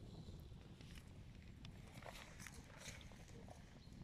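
Faint, sparse crackling and popping of a wood campfire burning under a hanging stew pot, over a low steady rumble.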